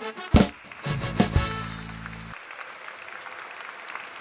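Live band ending a song: a loud drum hit, a couple more hits and a held chord that cuts off a little over two seconds in, then the audience applauding.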